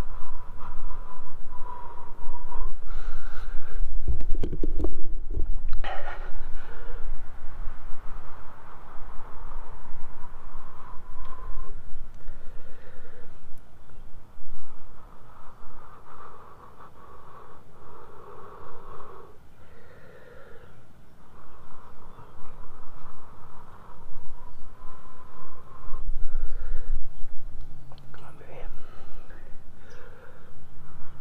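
A person blowing long, steady breaths into a dry-grass tinder bundle that holds a bow-drill ember, with short pauses between breaths: coaxing the glowing ember to burst into flame.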